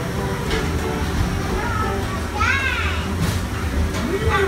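Children's voices and play noise over a steady low rumble, with one high-pitched child's call that rises and falls in the second half, and a couple of short knocks.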